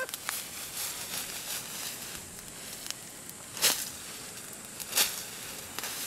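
Smouldering peat and brush fire crackling faintly over a low hiss, with two louder rustling strikes about three and a half and five seconds in.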